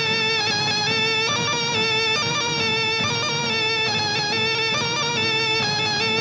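Film background score with long held notes at a steady level.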